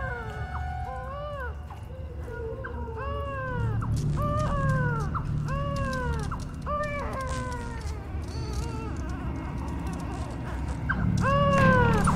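Repeated mewing animal cries, each rising and then falling in pitch, about one a second, over a low steady rumble.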